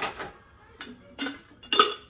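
Glass jars clinking and knocking against each other and the shelving as they are handled: about four sharp clinks, the loudest just before the end.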